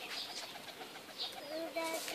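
Domestic pigeons cooing: soft, low, repeated notes that grow clearer in the second half.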